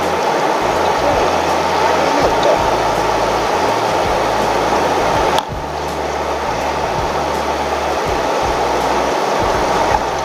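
Steady road and engine noise inside the cabin of a new Subaru BRZ with the 2.4-litre flat-four, driving at town speed. The level drops suddenly about five seconds in, then slowly builds back.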